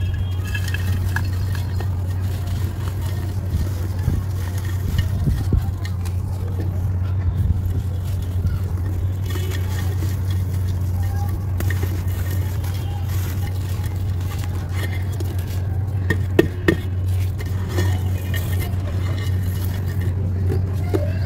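A dry mud-and-sand ball crumbling in the hands, its grit and small lumps falling into a clay pot with scattered small ticks and a few sharper clicks near the end. A steady low hum runs underneath throughout.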